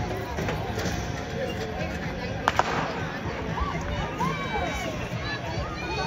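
A starting pistol fires once, a single sharp crack about two and a half seconds in, starting a 200 m sprint heat. Voices call out over outdoor background noise after it.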